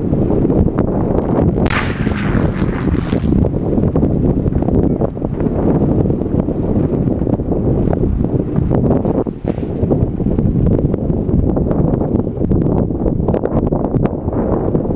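Heavy wind buffeting the microphone throughout. About two seconds in, a single sharp bang with a short rumbling tail: the demolition charge that fells a steel lattice radio mast, heard from a distance.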